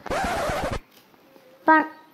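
A short, rough scratching noise lasting under a second, followed near the end by a brief pitched sound.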